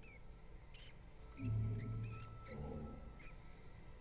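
White lab mouse squeaking in a series of short, high chirps, over a low musical drone that swells in the middle.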